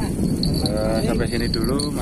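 A man's voice making drawn-out, wavering vocal sounds without clear words, over a steady low rumble.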